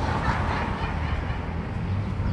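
Steady low rumble of outdoor street background noise, with no distinct single event.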